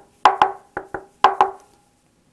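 Knuckle raps on the body of an Epiphone semi-hollow guitar without f-holes, about eight quick knocks in groups of two or three, each with a short hollow ring from the body: a demonstration of its semi-hollow construction.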